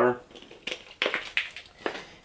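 Empty thin plastic water bottle crinkling as it is handled, a few sharp separate crackles.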